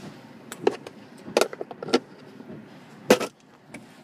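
Several sharp clicks and knocks from hands handling a car's center console and plastic interior trim, the loudest about three seconds in.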